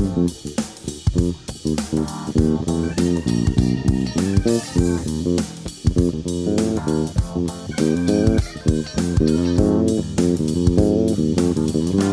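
Music Man StingRay electric bass played with the fingers: a fast, busy line of notes, each with a sharp, clicky string attack.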